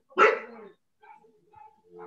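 A dog barks once, loud and sharp, about a quarter second in, carried over a video call's audio.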